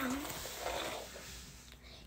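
A hairbrush's bristles rustling through long hair, a soft scratchy noise that fades out over about a second and a half.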